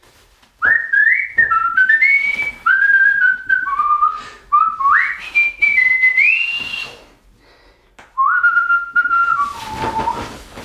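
A person whistling a tune: one clear pitch stepping from note to note with quick upward slides, in a long phrase, a short break near the eighth second, then a shorter phrase.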